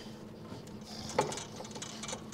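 Faint metallic clicks and scraping as the new coilover's shock body is wobbled down into the spread-open front suspension hub, with one sharper click about a second in.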